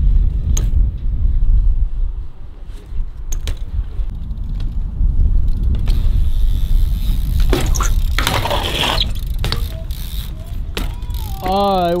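BMX bike rolling on a concrete skatepark, with a steady low rumble, the rear hub ratcheting, and scattered sharp clicks and knocks. A louder burst of noise comes about eight seconds in.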